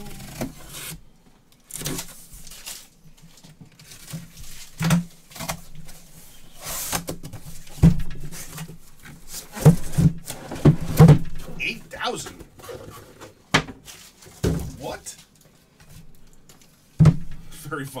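A utility knife cutting through the tape of a cardboard shipping case, followed by the cardboard being scraped and torn open and the boxes inside being handled. There are irregular scrapes and rustles with several sharp knocks.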